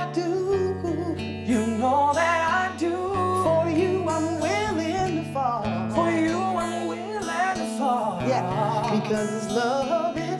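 Acoustic guitar strumming chords under a voice singing a slow, wavering melody, with low chord notes held underneath.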